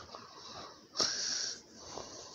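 A child's breathy exhale, like a sigh, about a second in and lasting about half a second, with fainter breathing around it.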